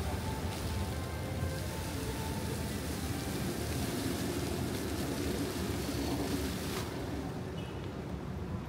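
Fountain jets splashing down into a pond, a steady hiss of falling water that thins and drops away near the end as the jets cut out.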